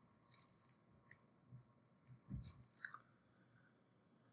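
Faint, sparse clicks and light scratches of a pencil and hand on paper over a wooden desk, with a soft thump about two and a half seconds in, in an otherwise near-silent small room.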